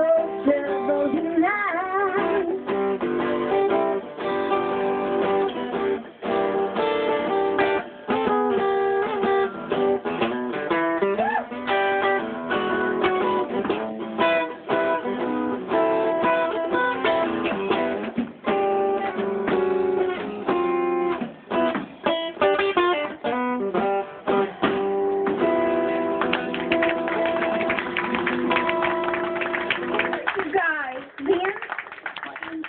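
Live acoustic guitar strummed with a drum kit behind it, an instrumental passage of a song with steady rhythmic strumming.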